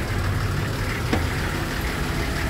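Nissan Safari engine idling steadily, with a single short knock about a second in.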